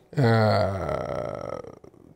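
A man's drawn-out hesitation sound, "eee", held for about a second and a half, falling in pitch and trailing off.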